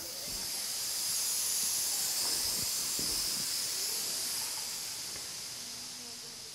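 A really loud high hiss from an unseen source, swelling over the first couple of seconds and then slowly easing off, with a few faint knocks under it.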